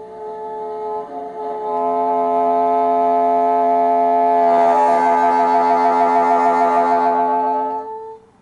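Solo bassoon holding a long sustained sound with several notes at once, a lower note entering about two seconds in as it swells louder. From about halfway the upper notes waver in a fast trill, and the sound cuts off just before the end.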